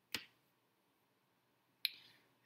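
Two short, sharp clicks about a second and a half apart, one just after the start and one near the end, with near silence between them.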